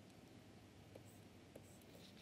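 Near silence with a few faint ticks and light scratching of a stylus writing on a tablet.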